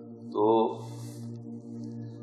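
A steady low drone of background music, with a man saying a single short word about half a second in and a soft hiss just after.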